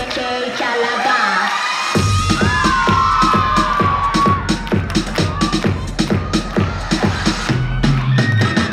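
Recorded pop dance track playing loud for a stage routine. The bass and drums drop out for about the first two seconds, leaving only the higher melody, then a steady bass-heavy beat comes back in.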